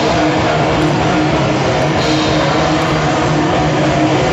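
Heavy metal band playing live at full volume: distorted electric guitars over drums, a thick, unbroken wall of sound.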